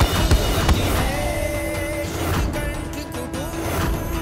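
Dramatic TV-serial background score: several heavy hits in the first second, then sustained held tones with a couple of rushing sweeps.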